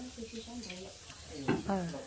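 Meat sizzling on a tabletop grill pan over a burner, a steady hiss under table chatter, with one voice louder about one and a half seconds in.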